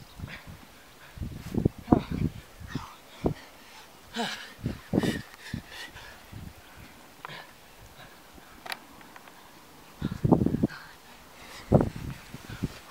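A man's hard, ragged panting and grunting breaths during an all-out sprint on sand. The breaths come in irregular bursts, loudest about four to five seconds in and again around ten seconds in.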